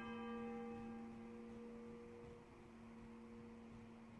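A single stroke of a church bell tolling for the funeral. Its upper tones die away within a second or so, while its low hum rings on steadily.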